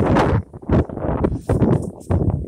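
Wind buffeting a phone's microphone in uneven gusts, with short lulls between them.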